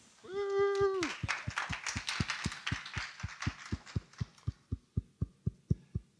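A voice calls out briefly, then an audience applauds for a few seconds before the clapping fades. Under it a low thump repeats steadily about four times a second and carries on after the applause.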